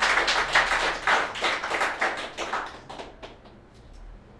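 Audience applauding: a dense patter of many hands clapping that thins to a few scattered claps and dies away about three and a half seconds in.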